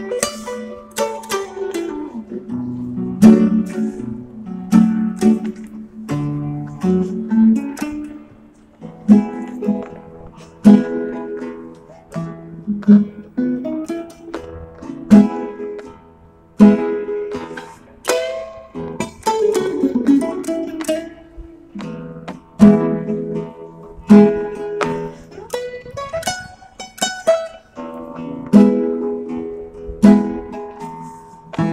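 Acoustic guitar playing alone, with strummed chords and plucked notes ringing out.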